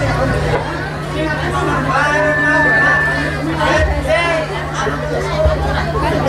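Several people talking over one another, with a steady low hum underneath. A regular low beat of music stops within the first second.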